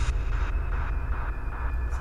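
A steady low rumble, with a faint choppy hiss above it.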